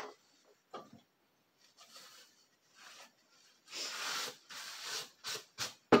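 Hands rubbing together, brushing off powder, a soft rubbing sound for about a second and a half near the middle. A few light clicks follow near the end as the glass bowl is handled.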